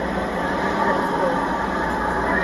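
Steady din of a large vehicle engine running, mixed with crowd chatter.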